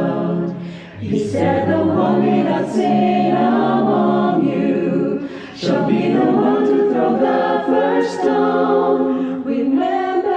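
Mixed men's and women's choir singing a cappella in harmony, with brief breaks between sung phrases about a second in and again about halfway through.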